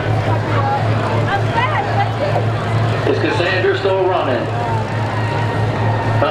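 Eight-cylinder demolition derby cars idling in a steady low rumble, with voices talking over it.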